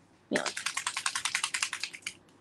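Small plastic bottle of Distress Oxide reinker shaken by hand, its metal mixing ball rattling inside in a fast, even run of clicks, about a dozen a second, starting a third of a second in.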